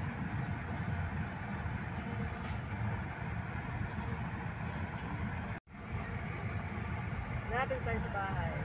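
Steady road and engine rumble heard from inside a moving car's cabin, cut off for an instant about five and a half seconds in. A voice starts briefly near the end.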